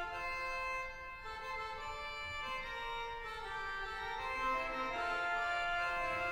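Pipe organ playing sustained chords of several held notes, the harmony moving to a new chord every second or so at an even level.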